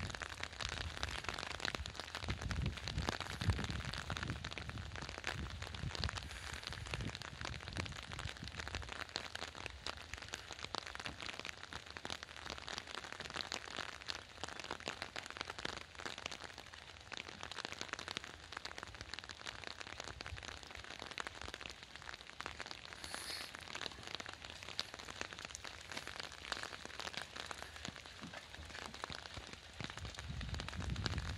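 Steady rain, with many close drops pattering and ticking on an umbrella overhead; some low rumbling in the first several seconds.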